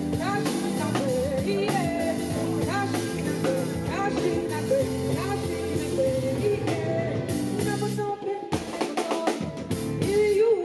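Live band music with a singer: a sung melody over drum kit, bass and keyboards. About eight and a half seconds in, the held bass notes drop out, leaving the voice and drums.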